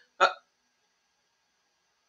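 A man's single short "uh" about a quarter second in, then near silence.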